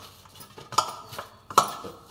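Stainless steel bowl knocked twice as a hand presses and smooths dough against it, each knock ringing briefly.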